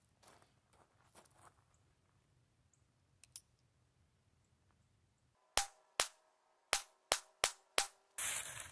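Ruger Wrangler .22 LR single-action revolver fired six times in quick succession, starting about five and a half seconds in, with the sharp shots about half a second apart. A few faint clicks come before the shots.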